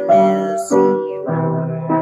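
Piano playing slow chords in waltz time: four chords struck at even intervals, each left to ring.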